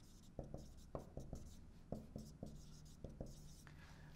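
Marker pen writing on a whiteboard: a faint string of short, separate strokes as two words are written out.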